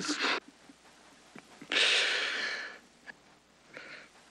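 A man's long breathy exhale, like a sigh, lasting about a second near the middle, with a couple of faint clicks around it.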